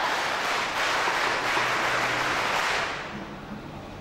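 Large crowd answering a spoken Islamic greeting together, many voices merging into one loud wash that dies away about three seconds in.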